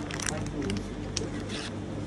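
Low, indistinct talk in a shop, with a few short, crisp rustles of something being handled: one about a quarter second in, and more around one and one and a half seconds.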